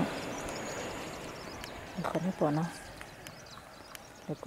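A voice says a few short syllables about two seconds in, over steady outdoor background noise.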